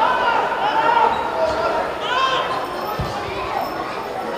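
Footballers shouting to each other across the pitch, with a single dull thud of a football being kicked about three seconds in.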